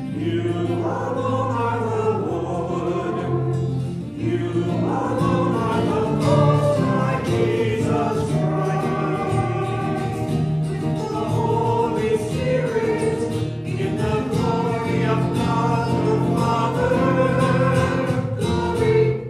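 Voices singing a sung Mass setting, phrase by phrase with held notes, over steady instrumental accompaniment.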